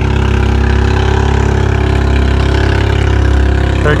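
A steady, loud engine drone at an even, unchanging pitch.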